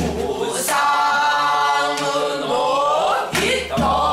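A man singing pansori, holding one long, full-voiced note that bends upward near the end, with a few sharp strokes on the buk barrel drum.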